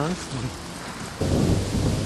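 A short voice at the very start, then about halfway in a sudden loud low rumble on the camera's microphone that carries on, the sort of buffeting that wind or handling makes on a handheld camcorder.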